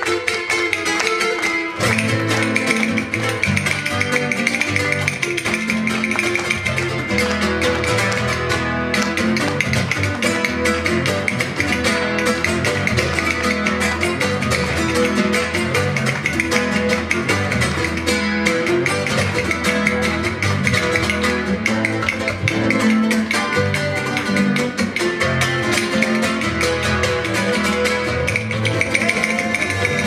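Acoustic guitar played flamenco-style, with strummed and plucked chords in a steady rhythm and a bass line that changes every half second or so, amplified on stage.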